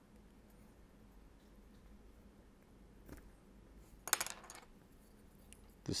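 Small sharp clicks as a plastic spudger is worked around the seam of a Samsung Galaxy S4, its plastic retaining clips snapping loose: one faint click about three seconds in, then a quick cluster of clicks about a second later.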